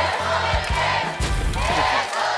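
Studio audience shouting and whooping over background music with a steady bass beat; the music cuts off at the very end.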